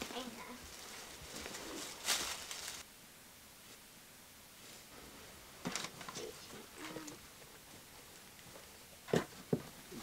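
Soft rustling and handling noises, as of cloth and stuffed toys being moved, with a few light clicks and knocks; a louder rustle comes about two seconds in and two sharper clicks near the end.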